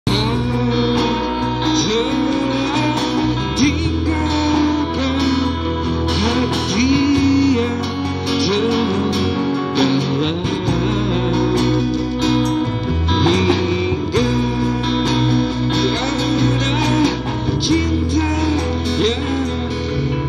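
Man singing live into a handheld microphone with a band, over guitar accompaniment and sustained low notes.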